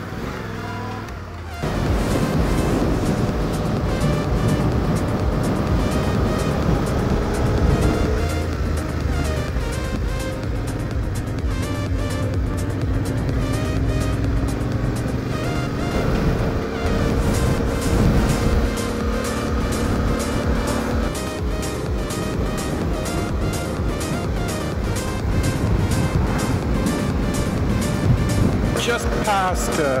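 Background music with a steady beat cuts in abruptly about a second and a half in, over the running engine of a motorcycle.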